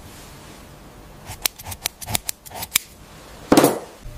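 Scissors snipping: a quick series of about eight sharp snips, followed near the end by a short, louder whoosh.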